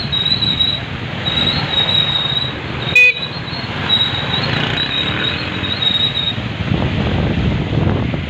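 Motorcycle engines running as they ride along a flooded street, with one short horn beep about three seconds in, the loudest sound.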